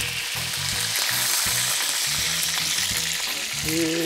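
Chicken pieces sizzling steadily in hot oil in a pot: the chicken is being browned before water goes in for soup.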